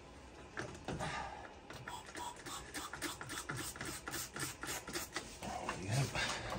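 Quick, irregular clicks, taps and rustles of things being handled and shifted about, several a second.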